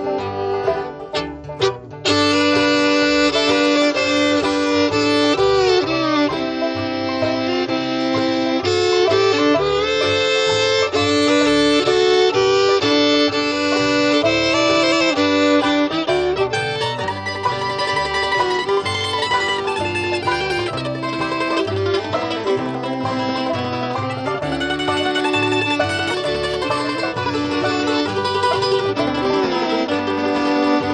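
Bluegrass band playing an instrumental break between sung verses, with banjo and fiddle over guitar and bass. The sound thins and drops briefly about a second in before the full band comes back in.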